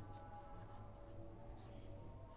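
Faint squeaks and scratches of a marker on a whiteboard as a line of an equation is written, over a low steady hum.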